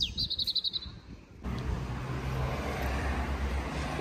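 A bird calling outdoors in quick trains of high chirps with a short falling whistle for about the first second. About one and a half seconds in the sound changes abruptly to steady outdoor background noise with a low hum.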